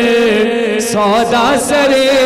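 Male voice singing an Urdu naat, drawing out long ornamented notes that waver up and down, over a steady low drone.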